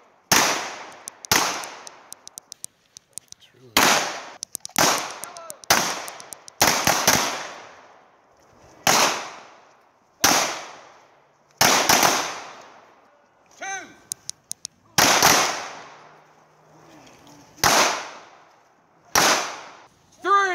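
Handgun shots on an outdoor range, fired singly and irregularly about one to two seconds apart, each crack followed by a long echo off the berm.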